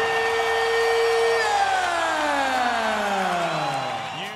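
A man's long, drawn-out shouted call over arena crowd noise: a note held steady for about a second and a half, then sliding smoothly down in pitch to the end.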